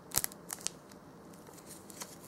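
Thin clear plastic bag crinkling and crackling as it is handled and worked with a toothpick, a few sharp crackles in the first second, then quieter.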